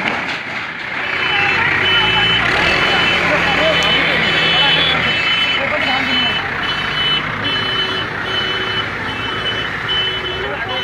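Reversing alarm of a JCB backhoe loader beeping steadily, about one and a half beeps a second, over the machine's diesel engine, which runs harder for the first few seconds while it works the bucket on a demolished sheet-metal shed. Voices of onlookers underneath.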